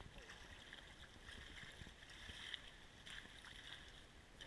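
Faint, steady wash of flowing creek water.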